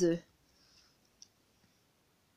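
A woman's voice finishing a word, then quiet with one short, light click about a second in, a pen tapping onto the page of a workbook.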